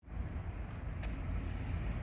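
Low, steady rumble of a distant ET22 electric locomotive hauling a container train as it approaches, with two faint clicks about a second and a second and a half in.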